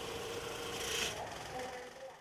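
Banknote counting machine running, its motor humming steadily as it riffles through a stack of paper notes, with a brief louder rasp about a second in.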